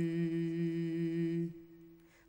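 Unaccompanied male voice singing an Islamic ibtihal, holding one long steady note at the close of the chant. The note breaks off about one and a half seconds in and fades away.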